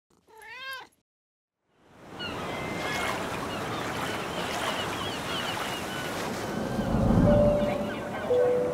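One short wavering animal call, then ocean surf washing in steadily with many small bird chirps over it. A held musical note enters near the end.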